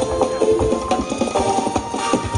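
Live jazz band playing, with the drummer laying down a fast, dense run of strokes over held notes from the other instruments.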